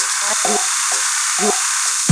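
Techno track in a filtered build: a steady bright hiss of hi-hats and noise with short clipped stabs, the kick drum and bass cut out.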